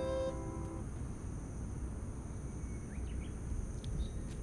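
Background music with a chiming melody ends within the first second. After that comes outdoor ambience: a steady high insect drone over a low rumble, with a few faint short chirps near the end.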